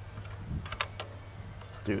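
Hands tearing meat from a cooked whole chicken on a metal grill tray: a few light clicks and rustles about a second in, over a low steady hum.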